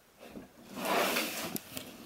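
A cardboard toy box being handled: a brief rustling scrape that swells about half a second in and fades over about a second.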